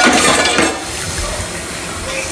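Kitchen dishes and a pot clinking as they are handled and put into the sink, loudest in the first half second.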